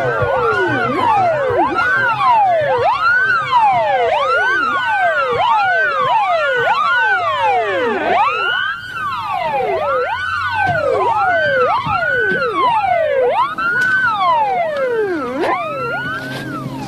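Several emergency vehicle sirens wailing together, out of step with each other, each rising and falling in pitch about once a second.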